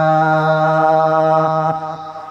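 A man's voice chanting Quranic recitation, holding one long, steady drawn-out note at the end of a verse, easing off near the end.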